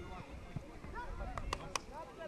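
Distant voices of children and adults on an open football pitch, with a few sharp clicks about a second and a half in.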